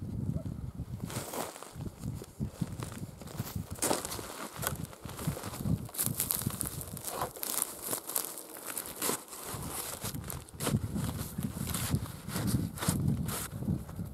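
Boots walking and shifting on a snow-covered stack of dry hay: irregular crunching and rustling of hay and snow underfoot.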